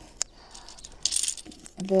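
Numbered draw tags clicking and rattling as they are dropped into a cloth drawstring bag, with a short rustle of tags and bag about a second in.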